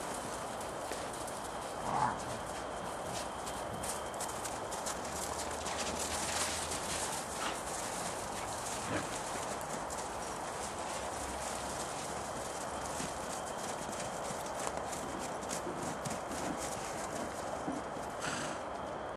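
Welsh ponies' hooves clip-clopping, a run of irregular knocks.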